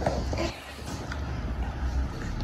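A restored 1984 Britânia B30 L desk fan running, a steady low motor hum under the rush of air from its blades.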